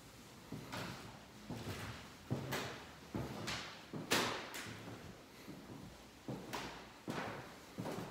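Footsteps on a bare hardwood floor in an empty apartment, about two sharp steps a second, each followed by a short echo.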